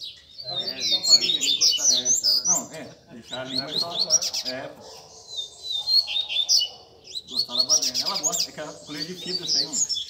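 Caged double-collared seedeaters (coleiros) singing in a warm-up roda, quick high chirping phrases with a buzzy trill about halfway through, the birds singing against each other. Men's voices talk underneath for much of it.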